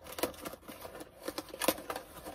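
Knife cutting through packing tape on a cardboard box, with the cardboard and tape crinkling: a string of irregular short scrapes and ticks.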